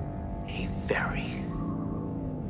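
Film-score music with long held notes under a hoarse, breathy whisper about half a second to a second in.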